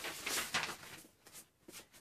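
Rustling of a light fabric scarf being laid down and smoothed on a table, strongest in the first half second, then fading to a few faint rustles.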